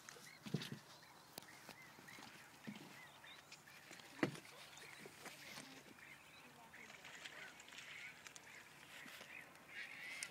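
Faint chorus of many distant water birds calling, short overlapping calls throughout, with a few sharp clicks, the loudest about four seconds in.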